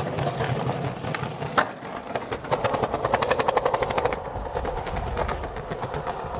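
Skateboard wheels rolling over pavement. There is one sharp click about one and a half seconds in, then a rapid run of clicks, about ten a second, from about two to four seconds in.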